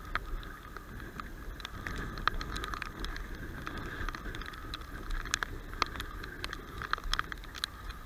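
Bicycle rolling over wet pavement in the rain: a steady hiss of tyres on the wet surface with irregular clicks and rattles throughout.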